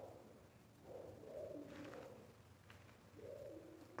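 Faint pigeon cooing, two soft coos, the first about a second in and the second shortly after three seconds, over near silence.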